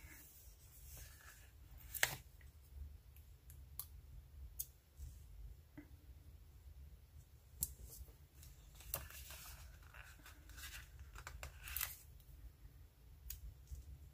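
Faint, sparse paper rustles and small sharp clicks as letter stickers are peeled from a sticker sheet and pressed onto a paper planner page, over a low steady hum.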